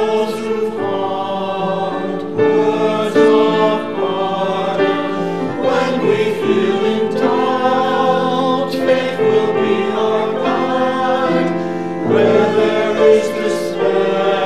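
Small mixed choir of men and women singing in parts, accompanied by piano, with held notes and changing phrases throughout.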